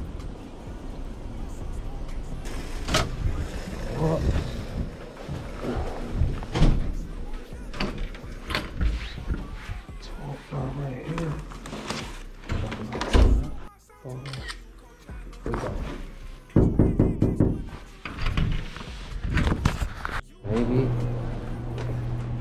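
Background music over scattered knocks and thunks from a glass entry door and an insulated delivery bag being handled, with footsteps; the sharpest thunks come about 7 and 13 seconds in, with a run of them near the end.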